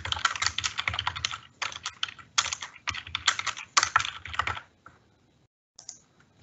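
Typing on a computer keyboard: quick bursts of key clicks that stop about four and a half seconds in, followed by a couple of lone clicks near the end.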